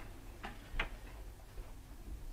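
Two short clicks about a third of a second apart over a low steady hum, the sound of someone leaving the podium, picked up by its microphones.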